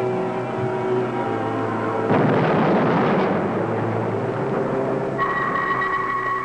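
Dramatic background music, then about two seconds in a loud rushing noise sound effect swells up over it and fades over about two seconds. Near the end a steady high electronic tone comes in and holds.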